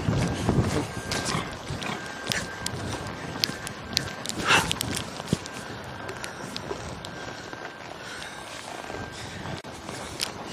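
A ridden horse's hooves striking the dirt of an arena in uneven footfalls, with one brief louder sound about halfway through.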